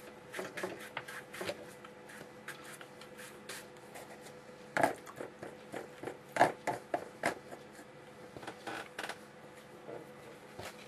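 Broad flat brush stroking and dabbing watercolour onto wet paper: a string of short scratchy swishes, with two louder knocks of the brush about five and six and a half seconds in.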